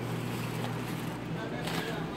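Steady low hum with faint voices in the background.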